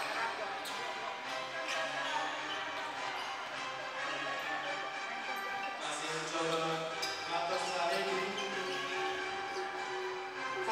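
A basketball bouncing on a hardwood gym floor, a few irregular knocks among game noise, under steady background music.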